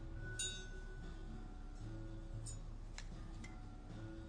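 Quiet background music with held notes under a dinner scene, with a few light clinks of tableware, one about half a second in and two near the end.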